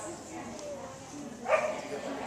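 A dog barks once, loudly, about one and a half seconds in, over faint background voices.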